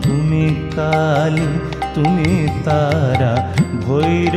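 Instrumental passage of a Bengali Shyama Sangeet devotional song: an ornamented, wavering melody line played over a steady low drone, with regular percussion strokes.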